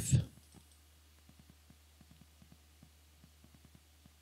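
Faint, irregular ticking of a vintage Power Macintosh 6100's hard drive seeking as the machine loads and opens the disk, over a low steady hum.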